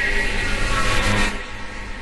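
Intro logo sound effect: a swelling whoosh with music under it, peaking a little past a second in and then dropping back to a lower, steady sound.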